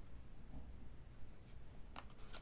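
A faint card being slid off the top of a deck of glossy oracle cards, with the cardstock rubbing against the deck in soft, brief scrapes in the second half.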